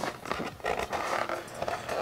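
Rustling and scraping handling noise with scattered small clicks, from a thin plastic armour shoulder piece and its glued-in black elastic strap being held and turned over in the hands.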